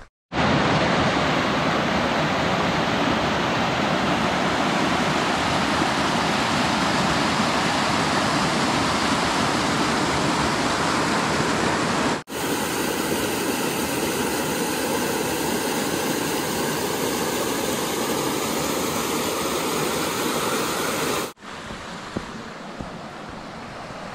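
Rushing water of a small mountain creek spilling over rocky cascades: a steady, loud rush. The sound cuts off and restarts about halfway through, and near the end it drops to a softer rush.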